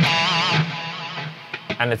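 High-gain electric guitar through the PolyChrome DSP McRocklin Suite amp sim, with the Attacker and Shredder drives stacked: a held lead note with vibrato that fades out about a second and a half in.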